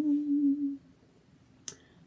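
A woman's short closed-mouth hum, one steady note held for under a second. A brief click follows near the end.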